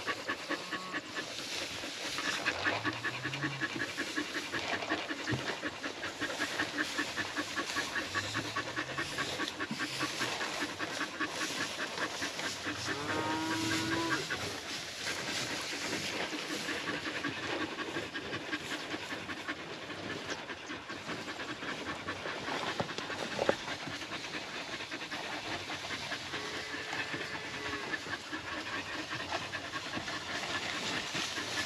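A dog panting rapidly and steadily close by. Cattle low a few times in the background, the clearest call about halfway through.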